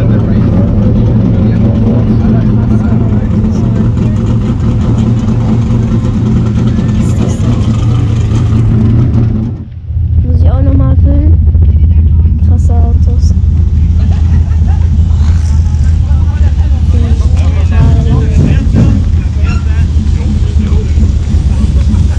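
Race car engines running, a loud steady low drone, with voices over it; the sound briefly drops away about ten seconds in.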